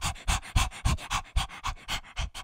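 Dog panting fast and evenly, about four to five breaths a second.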